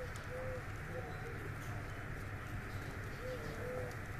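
A dove cooing faintly, a few short low coos, over steady outdoor background noise.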